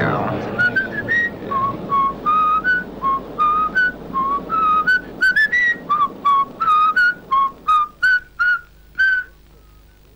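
A person whistling a tune as a string of short, clear notes, about two a second, that stops a little after nine seconds in.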